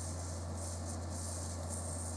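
Room tone: a steady low hum with a faint hiss, unchanging throughout.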